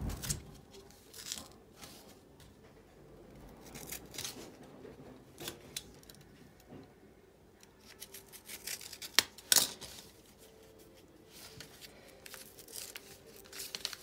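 A small knife blade slitting open a paper envelope: scattered short scrapes and clicks, the two sharpest just after nine seconds in. Near the end the envelope paper is handled and pulled open.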